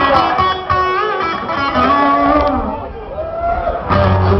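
Live electric guitar through a stage amplifier playing loose licks between songs, with bent and wavering held notes.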